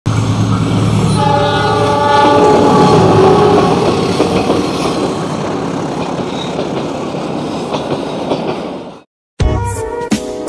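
Diesel locomotive approaching with its engine running, sounding a horn of several tones held together from about a second in until about four and a half seconds. The train then passes with engine and wheel-on-rail noise. The sound cuts off abruptly about nine seconds in, and music starts just after.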